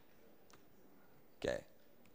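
Near silence: quiet room tone with a faint click about half a second in, then a short spoken "okay" near the end.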